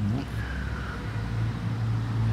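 Distant road traffic: a steady low rumble and hum under a pause in speech, with a faint thin whine during the first second.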